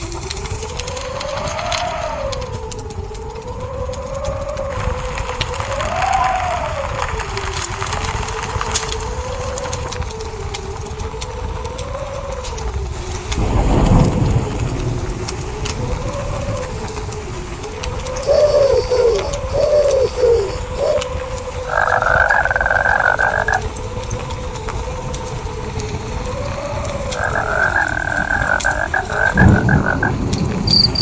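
A mix of looped nature sounds playing from a sleep-sounds app: a whistling tone that wavers up and down in pitch throughout, a low thump about 14 seconds in, a flurry of short chirps a little later, and two buzzing stretches in the second half.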